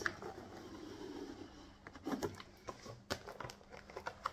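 Faint handling of a cardboard product box: a few light, scattered clicks and rustles as the wand is taken out of its packaging.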